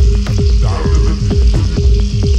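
Electronic dance track: a steady kick-drum beat under a held low note, with a constant hissing, crackly percussion layer on top.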